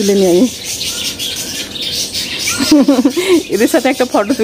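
A woman's voice, briefly at the start and again from a little past halfway, with birds chirping in the background.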